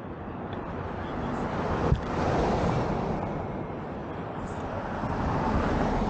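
Road traffic: passing vehicles give a broad rushing noise that swells and fades twice. A single sharp click comes just before the first swell peaks.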